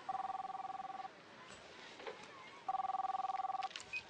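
A mobile phone ringing twice with an electronic ring: two notes sounding together with a fast trill. Each ring lasts about a second, with a pause of about a second and a half between them.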